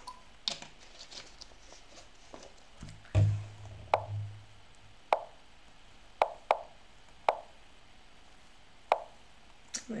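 Lichess online chess move sounds: short wooden clicks, one for each move, about eight in quick succession as a blitz game's opening is played. A heavier low thump about three seconds in is the loudest sound.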